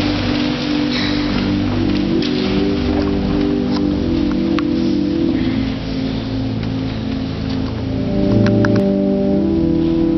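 Church organ playing slow, long-held chords, with scattered shuffling and rustling from people moving among the pews.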